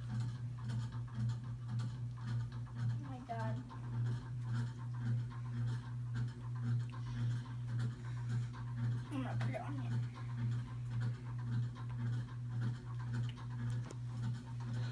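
A dog panting steadily and rapidly, about two pants a second.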